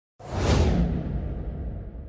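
Whoosh sound effect of a channel intro, with a low rumble under it: it starts suddenly just after the beginning, is loudest about half a second in, and then dies away with its hiss sinking lower in pitch.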